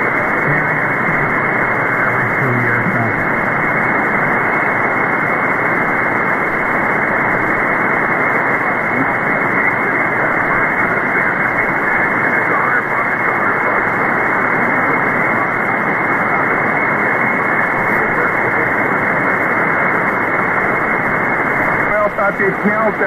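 Steady static and hiss from an SDRplay RSPduo software-defined receiver tuned to 1.930 MHz on the 160-metre ham band, the noise limited to a narrow voice band. A faint voice surfaces in the noise during the first few seconds.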